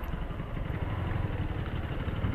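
2017 Yamaha Fazer 250's single-cylinder engine running at low, steady revs as the motorcycle creeps through stopped traffic, with an even low pulsing rumble.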